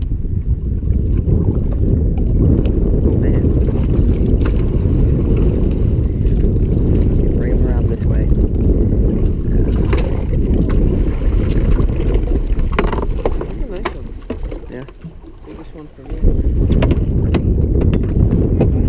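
Wind buffeting the camera microphone as a loud, steady low rumble, with scattered light knocks and clicks from the boat; the rumble drops away for a couple of seconds near the end, then returns.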